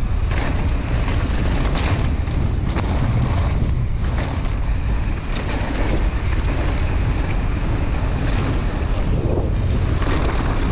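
Wind rushing over the microphone of a bike-mounted or rider-worn action camera as a mountain bike rolls down a rough dirt and gravel trail, with the tyres' rolling noise and small rattles and knocks from the bike over stones.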